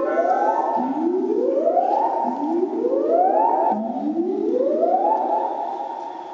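Electronic synthesizer sweeps played live through a concert PA: four rising whooshes, each climbing for about a second and then holding at the top, one about every one and a half seconds.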